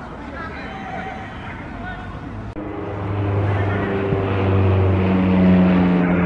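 Indistinct distant voices, then from about two and a half seconds in a steady low mechanical drone with an even hum that grows louder.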